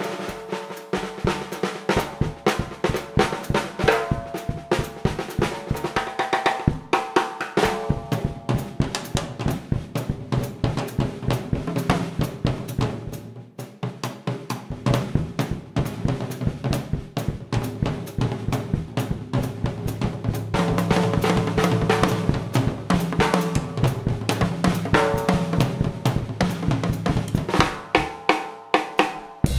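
Swing drum kit solo: rapid snare strokes with bass drum, hi-hat and cymbals, over quieter pitched accompaniment from the band. The playing dips briefly about halfway, then builds again.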